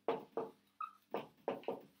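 Dry-erase marker squeaking on a whiteboard as a word is written, a quick series of about seven short squeaks, one per pen stroke.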